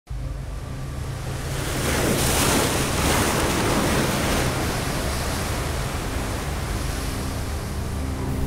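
Sea waves surging and washing against shoreline rocks, one surge swelling loudest about two to four seconds in, over a steady low wind rumble on the microphone.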